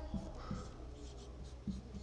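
Marker pen writing on a whiteboard: faint, short strokes, about three of them.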